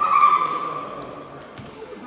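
A referee's whistle blown once, a single steady shrill blast that starts suddenly and fades out over about a second.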